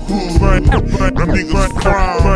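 Slowed-down, chopped-and-screwed hip hop with rap vocals over the beat. It is broken up by abrupt, stuttering cuts.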